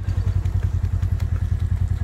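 An engine idling close by, a steady low rumble pulsing about a dozen times a second.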